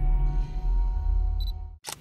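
Intro music with deep bass and held tones fades out. A short high beep follows, then a single sharp camera-shutter click near the end, a sound effect for a camera lens graphic.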